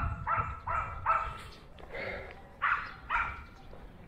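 A dog barking in quick runs of short barks, about eight in all, with pauses between the runs.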